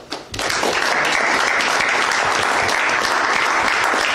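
Audience applauding: a roomful of hands clapping. It breaks out about half a second in and then holds steady.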